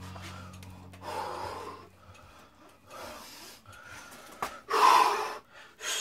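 A man's heavy, gasping breaths of hard exertion, three loud breaths a couple of seconds apart, the last the loudest. He is winded from a high-intensity burpee, body-row and squat circuit.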